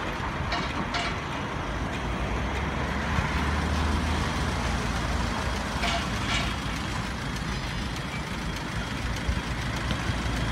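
Steady road traffic noise from cars and heavier vehicles passing at a city intersection, with a low engine rumble underneath. A few brief high clicks or squeaks cut through, about half a second in, at about one second and again around six seconds.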